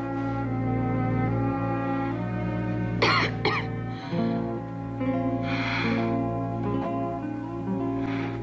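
Slow orchestral underscore of held string notes over a sustained low note, with two brief coughs about three seconds in.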